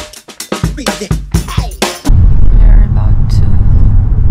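About two seconds of background music with sharp drum hits, which cuts off abruptly into a loud, steady, low rumble of a car moving, heard from inside its cabin.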